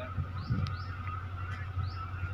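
A few short, high, rising bird chirps over a steady low hum.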